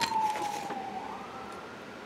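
A distant siren wailing, one clear tone sliding slowly down in pitch with a second tone joining about halfway through. A light click sounds right at the start.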